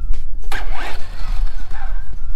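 Electric Traxxas Slash 4x4 RC short-course truck pulling away about half a second in: a sudden rush of motor and tyre noise on rough concrete, with a whine that rises and falls as it speeds off.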